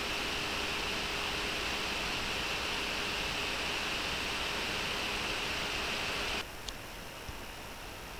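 Steady background hiss with a faint hum, the noise floor of a recording with nobody speaking. About six and a half seconds in, it drops suddenly to a quieter hiss, and a faint tick follows.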